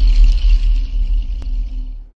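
Tail of a cinematic logo sound effect: a deep rumble under a held low drone, fading steadily and ending abruptly, with a faint tick about one and a half seconds in.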